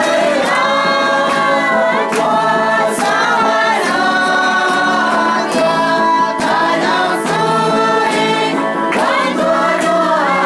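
A choir of many voices singing together in long held notes.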